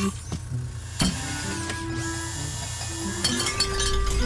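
Soft cartoon background music with a few held notes, and a single sharp knock about a second in.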